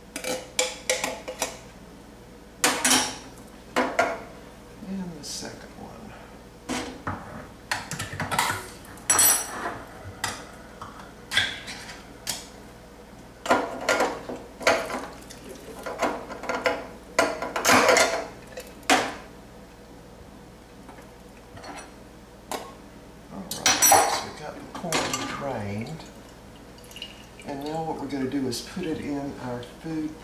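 Irregular clinks, knocks and scrapes of a metal spoon against tin cans and a metal strainer as canned corn is spooned out and drained.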